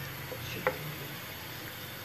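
Sliced onions frying in oil, a soft steady sizzle, with a single sharp tick about two-thirds of a second in.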